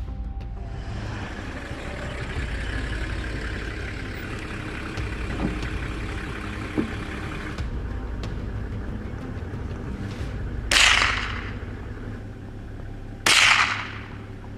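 Two rifle shots about two and a half seconds apart, each a sharp crack that dies away over about half a second. Under them, a vehicle engine runs steadily.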